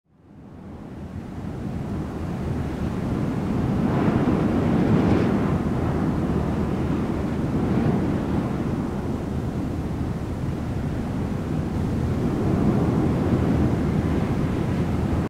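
Steady rushing noise, deep and without any tune, like wind or surf. It fades in over the first two seconds and swells slightly about four to five seconds in.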